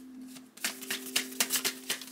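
A tarot deck being shuffled in the hands: a quick run of crisp card clicks that starts about half a second in, over a faint steady low tone.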